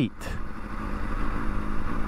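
Honda CBR600RR's inline-four engine running steadily as the bike rolls slowly at low speed.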